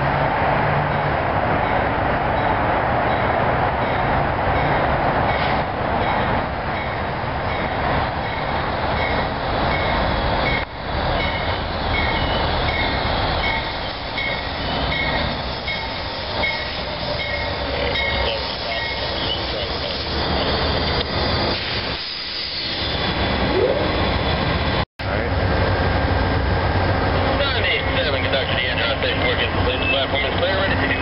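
Amtrak passenger train led by two GE P42DC diesel locomotives pulling into the station and slowing to a stop, with loud, steady engine and wheel noise. The sound cuts out briefly near the end, then the locomotives stand with a steady low engine hum.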